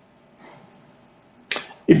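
Near silence, then about a second and a half in a short, sharp intake of breath by the narrator just before speech resumes.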